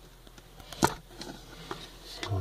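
A single sharp knock about a second in, with a few lighter taps around it: things being handled and set down around a glass terrarium.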